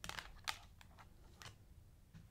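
Tarot cards being drawn from the deck and laid on the table: a few faint card snaps and slides, the sharpest about half a second in and again near a second and a half.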